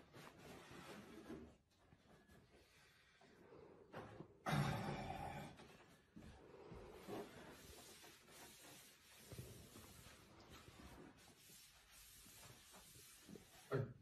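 Quiet room sound with faint scattered small noises, one louder burst of noise about four and a half seconds in, and a sigh at the very end.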